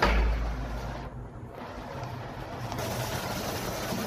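Push-button metered shower spraying water into a tiled stall: a deep thump at the start, then a steady hiss of spray that grows brighter about three seconds in.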